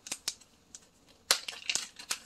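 Small plastic zip-top bag being opened and handled: a few sharp crinkles and clicks, the loudest burst about a second and a half in.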